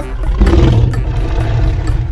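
A deep, rumbling T-rex roar, swelling about half a second in and easing off near the end.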